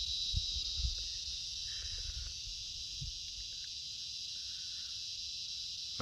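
A steady, high-pitched insect chorus, typical of crickets, with a few soft low thumps in the first second and again about three seconds in.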